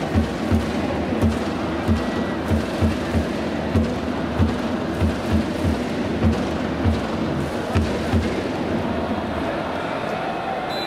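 Cheering-section drums in a baseball stadium, beating a loose rhythm of about two thumps a second over a steady wash of crowd noise.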